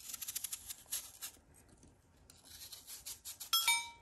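Kitchen knife cutting into a peeled apple: crisp scraping strokes of the blade through the apple flesh in two runs, the first about a second long and a shorter one later. Near the end comes a brief ringing clink.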